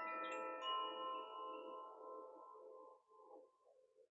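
A small handheld chime ringing: several overlapping metal notes from a few strikes, the last about half a second in, fading away over about three seconds.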